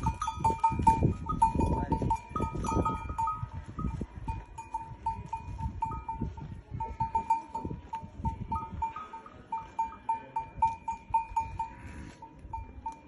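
Metal neck bells on livestock clinking irregularly as the animals move, short ringing notes all at about the same pitch, over low rumbling noise that is heaviest in the first few seconds.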